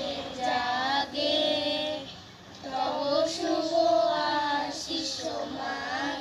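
A group of children singing together in phrases, with a short pause about two seconds in.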